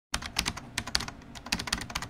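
Computer keyboard typing: a quick, irregular run of sharp key clicks, about five or six a second, used as a sound effect while a title types onto the screen.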